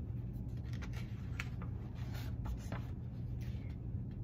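Pages of a paper picture book being handled and turned: scattered soft rustles and scrapes of paper, over a steady low hum.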